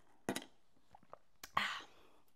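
Sipping iced coffee through a straw: a short sip sound, a few small mouth clicks, then a breathy exhale near the end.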